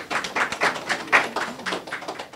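Applause from a small audience, with individual claps audible, tapering off near the end.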